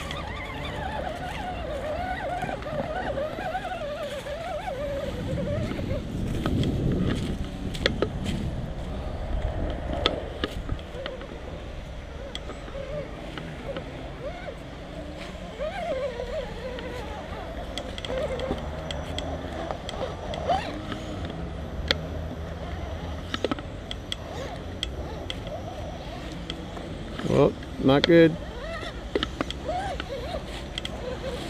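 Small electric RC rock crawler working its motor and gears, a whine that rises and falls with the throttle as it climbs over logs, with frequent light clicks and handling noise from the transmitter that the camera is taped to. A short loud burst, voice-like, comes near the end.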